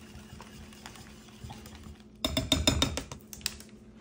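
Wire whisk beating eggs and chopped greens in a glass bowl: a quick run of clicks of wire against glass starting about halfway through and lasting about a second. It is faint before that.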